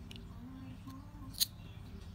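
Macadamia nut shell being pried open with a metal opener key: a couple of faint clicks, then one sharp crack about one and a half seconds in as the shell splits apart.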